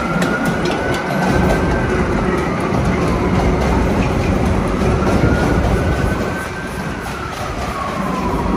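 Vintage IRT Lo-V subway cars running on elevated track: a steady rumble of steel wheels on rail, with the motors' whine rising and falling twice and sharp clicks from the wheels over rail joints.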